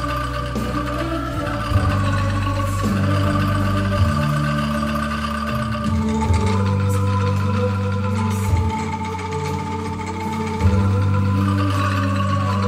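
An ensemble of children playing angklung: shaken bamboo tubes rattling out held notes of a slow hymn melody, the notes changing every second or two over steady low notes.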